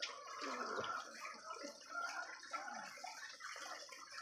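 Chicken pieces bubbling and sizzling in a sweet soy sauce braise in a wok, an irregular wet crackle.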